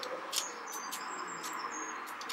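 Quiet handling of a makeup palette and brush: a few faint light clicks and taps over room hiss, with a few faint short high chirps.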